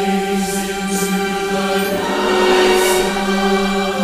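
A large choir singing sustained chords, the harmony changing about halfway through, with soft 's' consonants hissing out from time to time.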